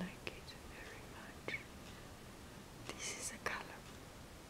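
Faint close-up mouth and breath sounds: a few soft clicks, then a short cluster of breathy, whisper-like hisses about three seconds in.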